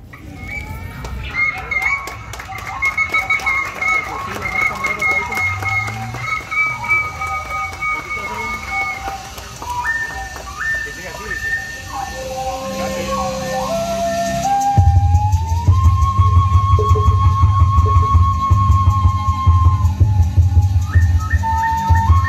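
Traditional Maya dance music: a flute plays a trilled, ornamented melody that steps down, then holds a long note. About fifteen seconds in, a steady low drum beat comes in and the music grows louder.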